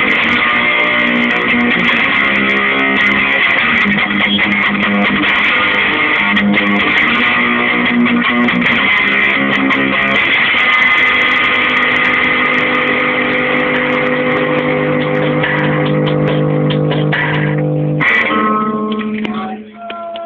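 Cheap electric guitar played through heavy distortion, a riff over a children's drum machine beat, with a held chord ringing out in the second half. Near the end the chord stops and a quieter held note with a few sliding tones takes over.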